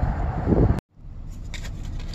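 Wind buffeting the microphone outdoors, cut off abruptly by an edit just under a second in. After the cut comes a quieter, steady low rumble inside a van, with a few faint clicks.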